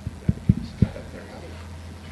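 Handling noise on a lectern microphone: four quick, dull thumps within the first second, over a steady low hum from the sound system.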